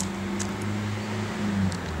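A steady low motor hum, with a few faint clicks.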